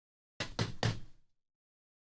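A stack of trading cards knocked twice against a padded table mat to square it, two quick dull knocks close together.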